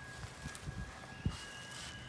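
Faint spritzes of a handheld trigger spray bottle squirting watered-down paint, with a few soft low thumps, the sharpest just after a second in.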